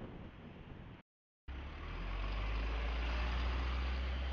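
Road traffic: vehicle engines and tyre noise on a wet road. About a second in, the sound cuts out briefly, then comes back as a louder, steady low engine rumble with road noise.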